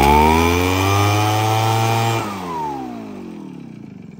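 Two-stroke engine of a backpack leaf blower, about 50 cc, just pull-started: it revs up and runs high and strong, then about two seconds in the throttle drops and the engine winds down, its pitch falling.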